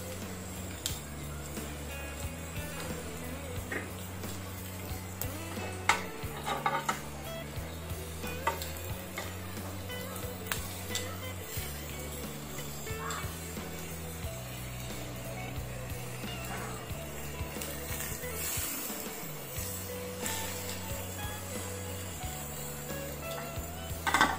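Whole squid sizzling on a ridged grill pan, with a few sharp clicks of metal tongs, under background music with a low bass line that steps in pitch about once a second.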